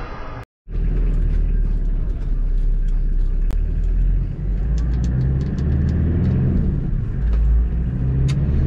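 Motor vehicle driving: a steady low engine and road rumble, with light clicks and rattles over it and an engine hum coming up from about five seconds in.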